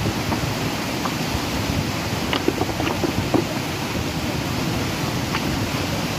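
Fast, turbulent river water rushing in a steady, loud roar, with a few faint short clicks in the middle.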